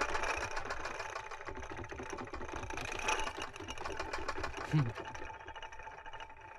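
A fast, steady rattle of furniture shaken by a nervously jiggling leg, easing off about five seconds in.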